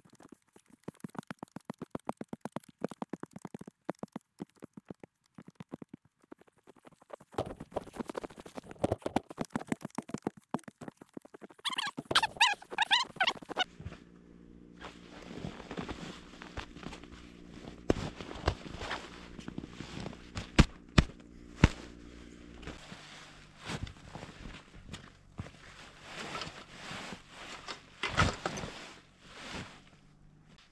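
A snow shovel crunching into packed snow, a quick run of short crunches. From about halfway there is rustling and a few knocks as a backpack and foam pads are handled in the snow.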